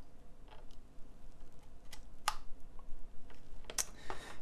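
A few sharp plastic clicks and taps as a SATA-to-USB adapter is pushed onto a 2.5-inch hard drive's SATA connector and its cable is handled. The loudest click comes a little over two seconds in, another just before the end.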